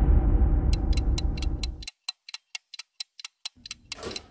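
A low rumble dies away over the first two seconds. From about a second in, a fast clock-like ticking, about five ticks a second, runs on alone once the rumble has gone.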